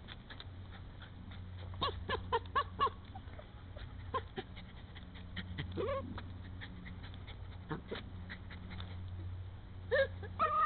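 A Jack Russell terrier squealing while it digs: a quick run of about five short high squeals just under two seconds in, then single squeals and a rising whine, over the scratching and clicking of paws in stony soil.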